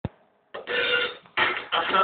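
A short click, then about half a second in a person's voice starts making rough, noisy vocal sounds in short bursts with brief gaps.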